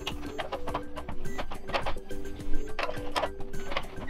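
Clicks and knocks of a metal server riser cage and graphics card being pushed down and seated into the server chassis. Soft background music with held notes runs under it.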